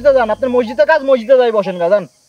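Speech only: one voice talking without a break, with a low hum beneath it that fades out in the first second and a half.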